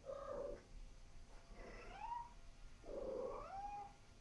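Domestic cat making three soft, quiet calls: a short one at the start, one about two seconds in that slides up in pitch, and a longer one near the end that rises and holds.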